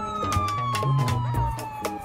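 Police siren wailing in one long, slow fall in pitch, over background music.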